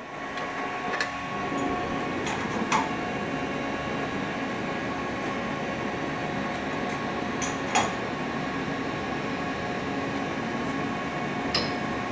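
Steady hum with several constant tones from a Haas VF-2SS CNC vertical mill at the end of its cycle, its spindle raised clear of the parts, with a few short clicks.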